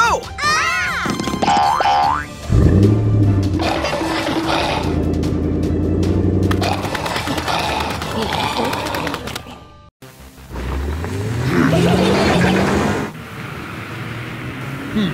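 Cartoon soundtrack: springy, boing-like sliding sound effects in the first two seconds, then a low engine-like hum that holds steady. The hum cuts out about ten seconds in and comes back rising in pitch, over music.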